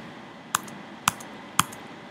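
Computer keyboard keystrokes: three separate key presses about half a second apart over a faint steady hiss.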